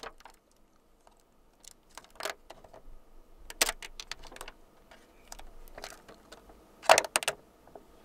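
Clear plastic protective film being peeled off a folding phone and handled, crinkling and rustling in short, scattered bursts. The loudest crinkle comes about a second before the end.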